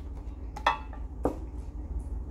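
Pokémon trading cards being handled and flipped through by hand, with two short light clicks, one about two-thirds of a second in and one just past a second, over a steady low hum.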